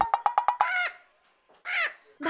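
Cartoon sound effects: a quick run of clicks, then two short squawks for the cartoon parrot, the second near the end.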